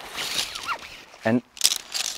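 Nylon tent-pole bag rustling as the poles are pulled out of it, with a brief sharper rustle near the end.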